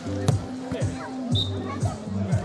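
Dance music with a steady bass beat, a kick drum about every half second. A single sharp slap about a quarter second in is the loudest sound.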